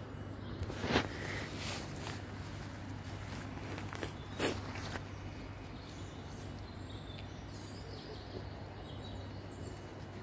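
Outdoor ambience with a steady low hum and two brief sharp scuffs, one about a second in (the loudest) and one about four and a half seconds in, with faint bird calls later on.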